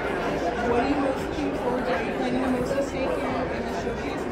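Speech: a conversational voice close to the microphone over the chatter of a crowd in a large, busy hall.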